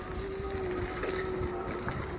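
A steady vehicle engine hum that stops near the end, with wind rumbling on the microphone.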